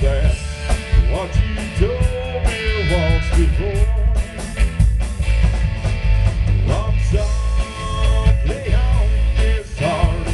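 Live country rock band playing: a man singing lead over electric guitar, electric bass and drum kit, with a heavy, boomy low end.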